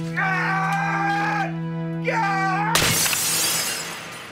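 Dramatic score with held notes, overlaid by two high wailing cries. Nearly three seconds in, a sudden loud crash of shattering glass cuts the music off and dies away slowly.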